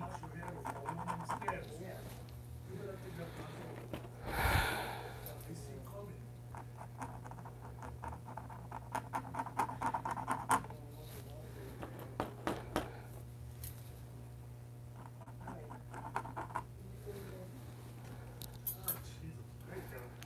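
Acrylic paint marker tip dabbing and scratching on paper in many small, light strokes, over a steady low hum. A short, loud rush of noise comes about four and a half seconds in.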